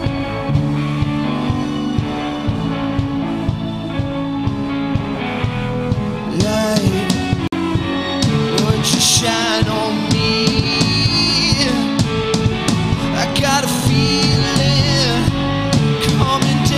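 Indie rock band playing live on drum kit and guitars. The playing gets louder and busier about six seconds in, with cymbal crashes.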